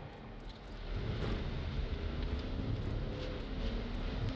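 Steady road and engine rumble inside a moving police patrol car's cabin, getting a little louder about a second in.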